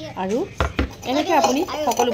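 Kitchenware clatter of a steel tumbler handled over a glass bowl, with a knock a little over half a second in, under a voice talking.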